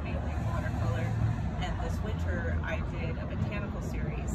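A woman talking over a steady low rumble in the background.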